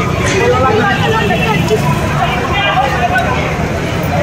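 Several people's voices talking over one another, with a steady low rumble underneath.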